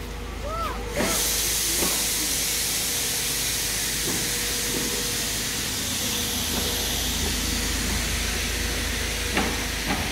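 A loud, steady hiss that starts suddenly about a second in and holds without change.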